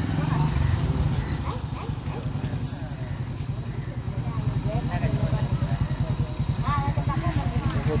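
An engine idling with a steady, fast low pulse, with faint voices. Two brief high-pitched squeaks come about a second and a half in and again near three seconds.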